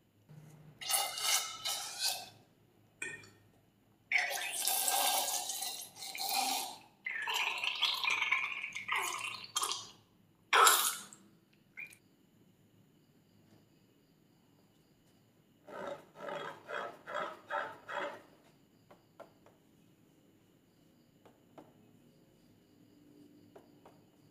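A filled balloon snipped open with scissors and its slime gushing and glugging out into a glass tray in several pours, the loudest splash about ten seconds in. Later comes a quick run of about six short rubbing sounds.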